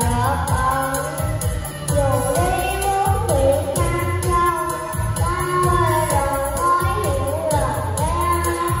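A little girl singing a Vietnamese song karaoke-style over a backing track with a steady beat.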